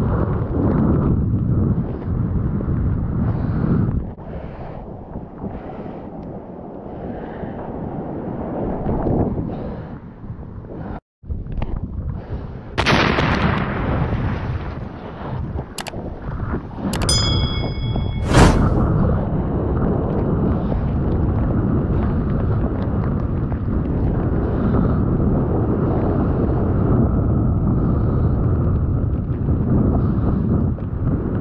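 Rushing water and wind noise on a surfer's action-camera microphone as it moves through breaking waves and whitewater. A brief dropout comes about midway, followed by a sudden loud splash and, a few seconds later, a couple of sharp clicks with a short ringing chime.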